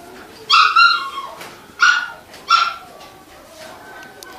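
A dog barking three times within about two seconds, the first bark the longest.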